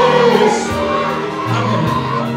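Worship music: a group of voices singing long held notes over a steady instrumental accompaniment.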